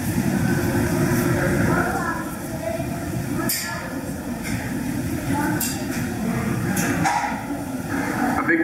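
Indistinct voices of people around the exhibit over a steady low rumble, with a few short sharp clicks.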